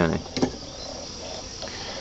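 A steady background chorus of insects.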